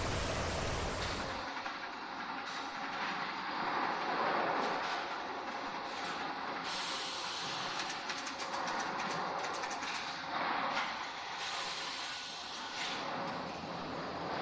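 Steady running noise of sawmill lumber-handling machinery, with a faint hum and irregular clacking and rattling throughout.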